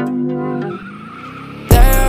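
Synth notes of an intro jingle, then a sudden, loud car sound effect near the end: tyres screeching with a deep rumble, as in a burnout.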